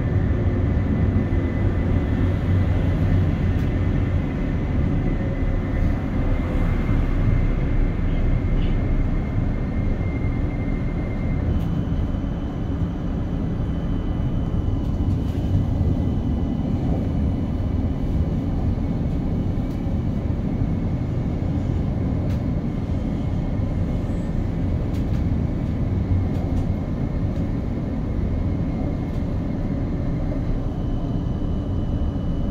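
Light rail tram running between stops, heard from inside the cabin: a steady low rumble of wheels and running gear, with a faint high whine that shifts in pitch about a third of the way through.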